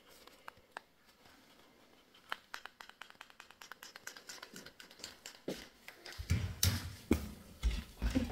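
Light clicks and taps: a few scattered at first, then a fast run of them starting about two seconds in. Near the end a louder low rumbling rustle comes in.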